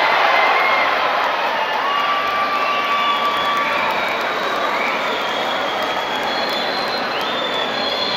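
Arena crowd cheering and clapping, with drawn-out calls rising above the noise; loudest in the first second.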